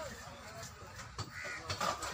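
A bird calling about a second and a half in and again near the end, over short clicks of a knife working the hide of a cow carcass as it is skinned.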